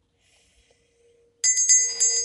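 Brass hand bell rung by hand, starting about one and a half seconds in after near silence: quick repeated clapper strikes with a bright, high ringing that carries on between them.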